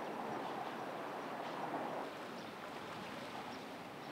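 Steady outdoor ambient noise by open water, an even hiss with no distinct events, dropping slightly about halfway through.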